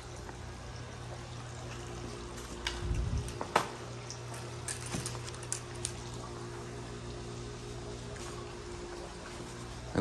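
Swimming pool's circulation pump running with a steady hum while water runs into the pool. A few light clicks, one sharper about three and a half seconds in.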